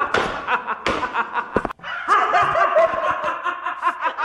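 Men laughing loudly, breaking in suddenly at the start.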